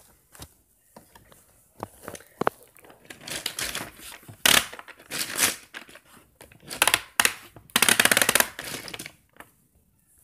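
Plastic toy track set being handled, with scattered clicks and knocks, then several rattling clatters in the second half, the longest near the end.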